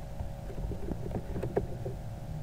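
Computer keyboard being typed on: irregular key clicks of varying strength, the sharpest about one and a half seconds in, over a faint steady background hum.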